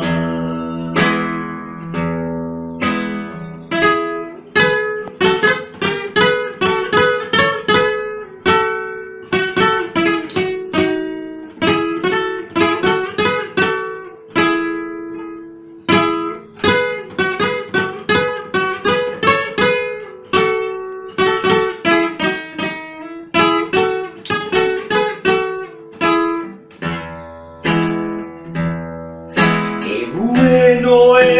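Solo acoustic guitar playing an instrumental break: a quick picked melody of single notes ringing over held bass notes, with no voice.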